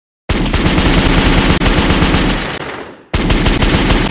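Machine-gun fire sound effect in two long bursts of rapid shots, each fading away. The second burst starts about three seconds in, just after the first dies out.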